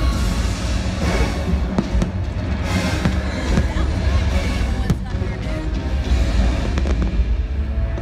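Fireworks bursting in a nighttime show, several sharp bangs over a steady low rumble, mixed with the show's loud music soundtrack.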